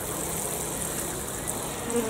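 Water showering steadily from a watering can's brass rose onto compost in plastic modular seed trays, watering in freshly sown seeds.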